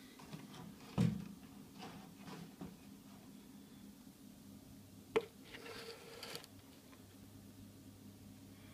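Handling noise as a camera is carried and set down on a worktop: a knock about a second in, a sharp click a little after five seconds, then a brief rustle, over a low steady hum.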